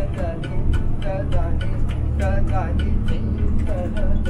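A man singing an Indian classical raga composition into a handheld microphone, his voice sliding and turning in quick ornaments. Under him is an accompaniment of evenly spaced tabla strokes and the drone of a tanpura playing two notes. A steady low rumble of the moving bus runs underneath.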